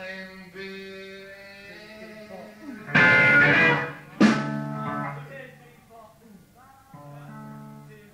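Guitar in a 1970s rock studio outtake: sustained notes ring, then two loud strummed chords come about three and four seconds in and ring out, followed by softer picked notes.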